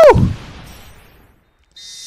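Loud, brief electronic transition sound effect from an anime's logo card, its pitch falling steeply at the start and its tail fading over about a second. It cuts to dead silence, and a faint steady high beep starts near the end.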